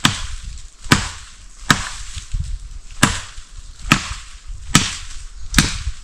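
Wood being chopped by hand with a blade: seven sharp strikes, a little under a second apart.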